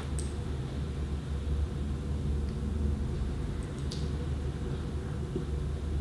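Steady low background rumble with faint hiss, and a couple of faint clicks, one shortly after the start and one about four seconds in.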